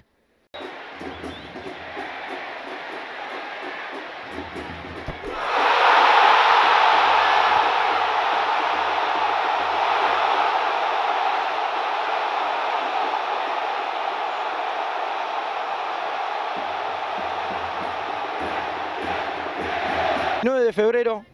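Football stadium crowd: a steady din that erupts into a loud cheer about five seconds in, as a goal is scored, then slowly dies down.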